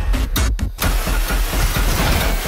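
Action-trailer soundtrack: music and fight sound effects over a heavy low rumble, cutting out sharply twice in quick succession about half a second in.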